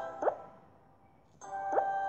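Cartoon 'plop' sound effects from a colouring app, two short pops, one just after the start and one near the end. Short chiming music phrases sound around them, with a quiet gap in the middle.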